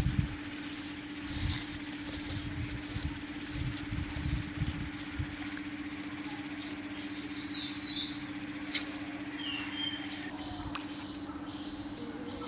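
Outdoor background with small birds chirping a few short notes in the second half, over a steady hum. Several dull thumps come in the first few seconds.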